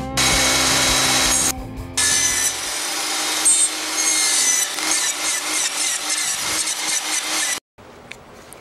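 Table saw blade cutting into wood, a loud rough sawing noise with a short break about a second and a half in. Later it turns into a fast rattling chatter, then cuts off suddenly near the end.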